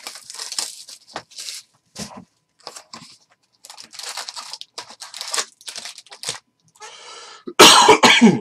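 Cardboard trading-card box and foil-wrapped card packs being handled, giving a run of short crinkling, rustling bursts. Near the end comes a loud cough.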